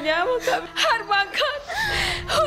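A woman crying and wailing, her voice quavering and wobbling in pitch as she sobs out broken phrases.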